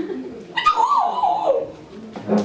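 A baby's high-pitched squeal: one wavering call about a second long that drops in pitch at the end.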